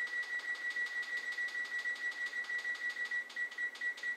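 Electronic oven timer beeping in a rapid even train, about five beeps a second, as its button is pressed to set the time. The beeping stops near the end.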